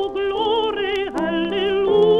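A female contralto singing a sustained line with wide vibrato, with held notes of instrumental accompaniment beneath, played from an old 45 rpm record.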